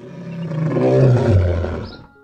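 A lion roaring: one long roar that swells to its loudest about a second in, falls in pitch, and cuts off just before two seconds.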